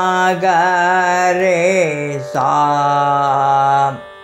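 A Carnatic vocalist singing the swara syllables of an alankaram exercise, with the pitch gliding and oscillating between notes. After a brief break just past two seconds comes a held lower note, cut off sharply at the end.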